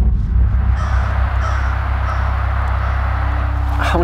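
Crows cawing a few times over a steady low rumble.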